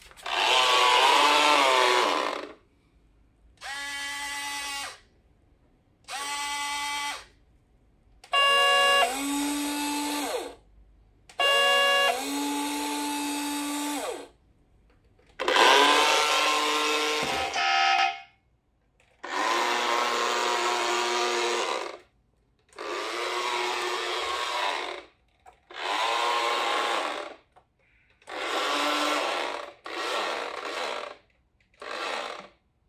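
Small electric drive motor and gears of an Aoshima 1/32 radio-controlled model bus whining in about ten runs of two to three seconds each, with short pauses between them. The pitch rises as the bus speeds up and falls as it slows.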